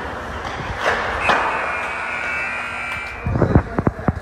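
Ice rink's end-of-game horn sounding steadily for about a second and a half over crowd noise, as the third-period clock runs out. Loud thumps of the recording phone being handled follow near the end.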